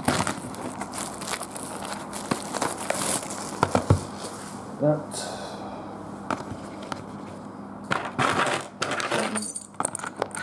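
Handling of a shrink-wrapped cardboard trading-card box, with crinkles of the plastic wrap and sharp clicks and knocks as it is moved and set down on a table. Near the end a bunch of keys jangles, ready to cut the wrap.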